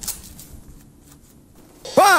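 Faint rustling and light handling noises of motorcycle gloves being pulled on and adjusted, with a short knock right at the start.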